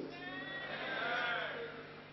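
A single drawn-out vocal call from a person, rising and then falling in pitch and fading out about a second and a half in.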